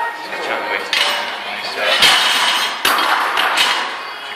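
Gym weights clanking: several sharp metal knocks and thuds of barbell plates, the loudest about two seconds in, over a noisy background.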